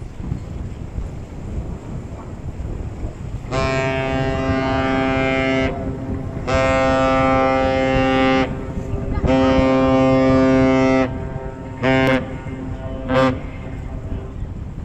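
A Great Lakes freighter's deep horn sounds the master salute: three long blasts followed by two short ones, over a steady rumble of wind and waves.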